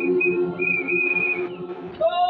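A high, steady whistle blown in short blasts and then one longer blast of nearly a second, over a low sustained musical hum.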